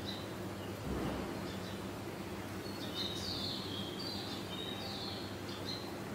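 Small birds chirping in the background, a run of short high chirps and falling notes in the second half, over a steady low hum, with a soft low thump about a second in.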